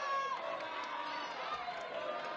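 Fairly quiet murmur of a group of people talking over one another, many overlapping voices with no single clear speaker.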